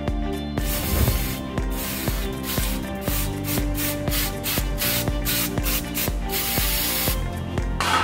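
Aerosol brake cleaner hissing as it is sprayed onto the greasy stub axle and drum-brake backing plate to degrease them. The spraying starts about half a second in and stops about a second before the end.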